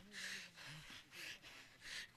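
A man breathing sharply and forcefully into a close microphone: three short, hissing breaths, one at the start, one a little past a second in and one near the end, with a faint low hum of his voice at the start.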